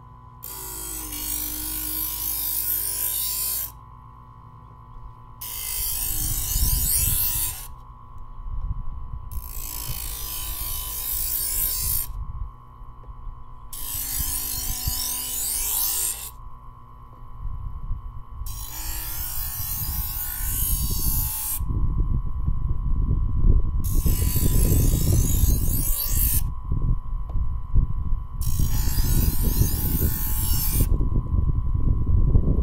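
Presto electric knife sharpener with its motor humming steadily while a knife blade is drawn through the grinding wheels seven times, each pass a harsh grinding hiss of two to three seconds, about every four seconds, putting an edge on a thin coated chef's knife. Wind rumbles on the microphone in the second half.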